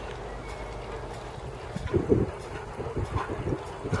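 Wind on the microphone: a steady low rumble that breaks into irregular low buffeting thumps about halfway through.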